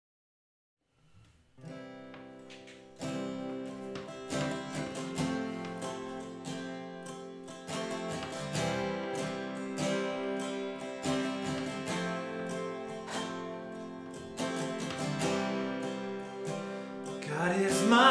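Two acoustic guitars playing the introduction to a worship song. They come in after about a second and a half of silence and grow louder about three seconds in. A man's singing voice enters near the end.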